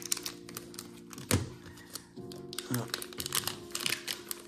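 Crinkling and crackling of a plastic trading-card booster-pack wrapper as it is handled and torn open, with one sharper crackle about a second in, over soft background music with sustained chords.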